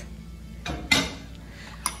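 A metal spoon stirring coffee in a ceramic mug: two short scrapes against the mug about two thirds of a second to a second in, and a sharp clink near the end.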